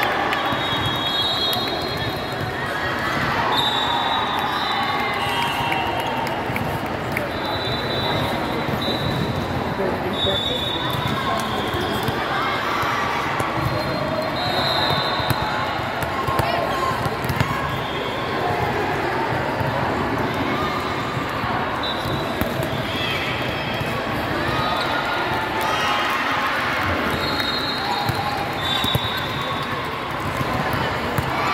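Volleyball play in a large, echoing hall: a volleyball bounced and struck, over the steady babble of players and spectators. Short high-pitched tones recur every few seconds.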